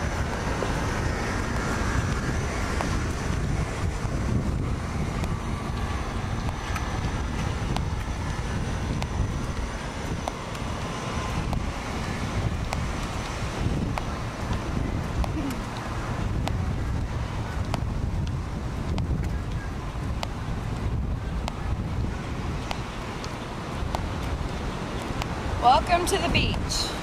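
Wind buffeting a handheld camcorder's microphone: a steady, gusting low rush.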